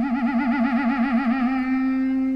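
Heavy psych rock recording: a single long sustained note with a wide, wavering vibrato that stops about one and a half seconds in, the note then held steady.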